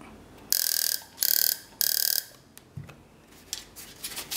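Homemade EMP generator, a taser's high-voltage supply discharging into a coil, fired three times in quick succession: each burst is under half a second of harsh buzzing spark crackle with a steady high whine. A few faint clicks follow.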